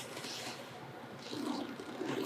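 Faint breathing of a woman exercising, with a slightly stronger, breathy swell about one and a half seconds in.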